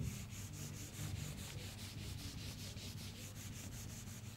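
Whiteboard duster rubbing quickly back and forth across a whiteboard as it wipes it clean. Faint, even strokes, about five a second.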